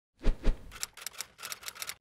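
Logo sting sound effect: two deep thumps, then a quick, irregular run of sharp clicks like typewriter keys.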